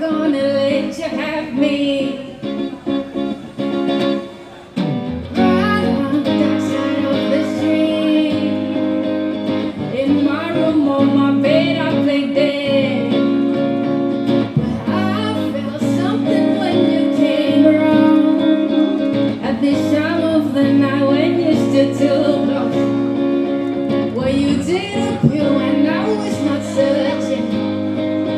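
Live song: a woman singing over electric guitar chords. The music dips briefly about five seconds in, then comes back fuller and louder.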